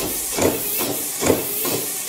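A steady hiss, with a soft swish swelling about once a second.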